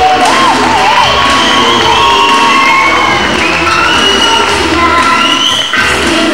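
Audience cheering and shouting over loud music, with high wavering shouts in the first second.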